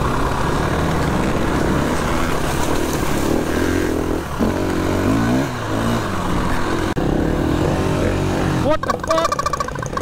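Enduro dirt bike engine running under the rider, its revs climbing twice, about four and seven seconds in, as it rides a rough gravel track. Near the end the sound turns choppier and uneven.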